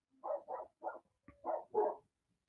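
Dogs barking: about five short, fairly quiet barks in quick succession.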